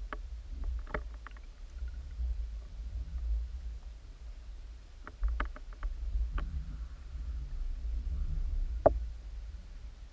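Underwater sound picked up through a submerged camera: a steady low rumble of water, with scattered sharp clicks and ticks and one louder knock near the end.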